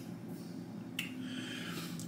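A man's single small mouth click about a second in, then faint breathing, as he tastes a very hot sauce, over a low steady hum of room tone.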